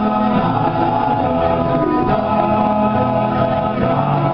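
Male a cappella group singing held chords in close harmony, voices only with no instruments, the chord shifting about halfway through.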